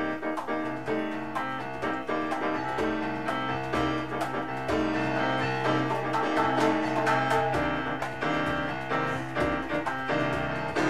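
Grand piano playing the instrumental introduction to a slow song, with light hand percussion keeping time.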